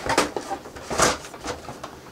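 Handling noise from packaging and stabilizer parts being moved aside on a desk: a few short clicks and rustles, the sharpest about a second in.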